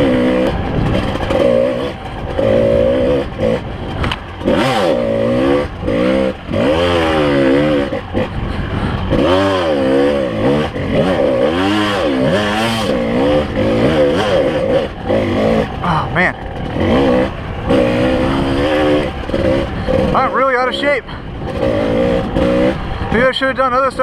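Kawasaki KDX 220 two-stroke single-cylinder dirt bike engine, its pitch rising and falling over and over as the throttle is worked, with a few knocks from the bike over rough ground.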